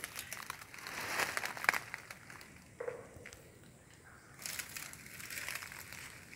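Quiet, irregular crackling and rustling with scattered small clicks, and a brief low tone about three seconds in.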